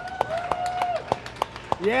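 Roller coaster riders clapping in scattered, uneven claps and cheering. One voice holds a long steady call in the first second, and a short shout comes at the end.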